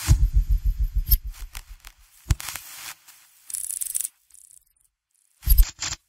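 Electronic sound effects for an animated neon logo. A low, fast-pulsing buzz runs for about the first second and a half, then comes short bursts of crackling static, and a final low hit near the end.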